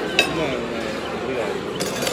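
A single sharp clink of tableware just after the start, over steady voices and chatter.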